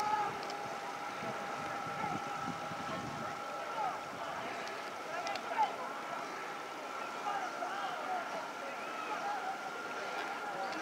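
Distant, indistinct voices calling out across the water, over a steady faint whine.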